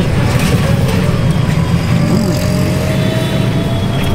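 Steady low rumble of a rickshaw moving through city traffic, heard from inside it, with a faint rising whine in the second half.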